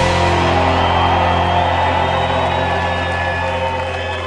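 A live rock band's final chord held and ringing out through electric guitar amps, with a steady low hum, slowly fading over a cheering crowd.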